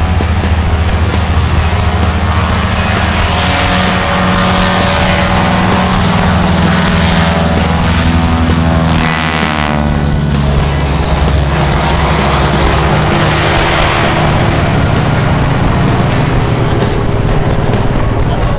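A Stearman biplane's radial engine running at high power, its note dropping and then rising as the plane passes close by about nine seconds in. Loud rock music plays over it.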